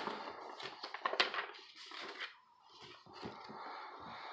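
Rustling and soft knocks of something being handled close to the microphone, with a sharp click at the start.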